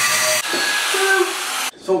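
Angle grinder cutting steel angle iron, a steady grind that stops abruptly near the end.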